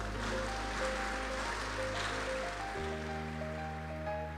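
Congregation applauding over soft, sustained keyboard chords. The clapping fades out about three seconds in, and the chord changes at the same time.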